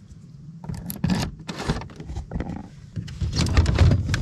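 Key turning in a car roof box's lock, followed by a series of short plastic clicks and rattles as the lid's latches are released.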